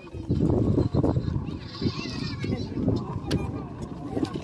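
A crowd of spectators talking and calling out, many voices at once.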